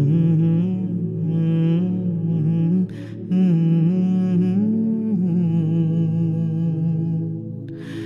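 A man humming a slow, wordless melody in long held notes with gentle bends in pitch, with a short pause for breath about three seconds in.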